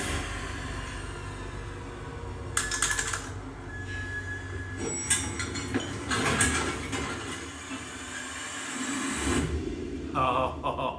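Tense film-trailer sound design: a steady low rumble with bursts of rapid clicking and rattling, the first about two and a half seconds in and more around five and six seconds in, fading out near the end.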